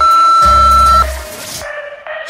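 Workout interval timer giving one long beep of about a second as the countdown runs out, marking the end of a work interval. Pop background music with a pulsing bass plays under it and drops away as the beep ends.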